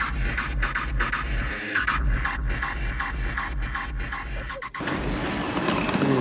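Electronic dance music with a fast, steady beat and heavy bass; the bass drops out a little before the end.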